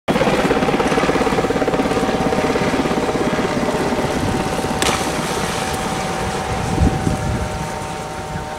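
An engine running with a rapid, even pulsing beat that slowly weakens, over a steady high whine. A single sharp click comes a little before the middle.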